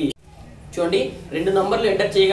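Speech only: a man talking, with a short pause just after the start.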